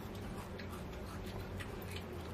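Faint, irregular small crackles and ticks as a crisp fried wheat-flour sweet is bent and broken apart by hand, over a low steady hum.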